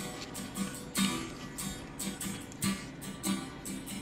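Background music: acoustic guitar playing plucked notes.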